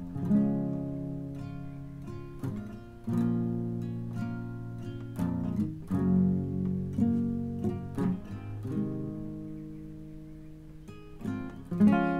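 Acoustic guitar playing a slow instrumental intro: chords picked and strummed about once a second, each left to ring and fade before the next.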